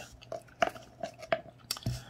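A string of soft clicks and smacks, about six in two seconds, between pauses in speech.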